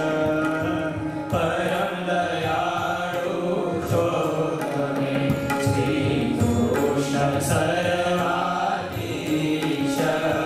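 Devotional chant-like singing with musical accompaniment, with tabla drumming, as the seated audience claps along.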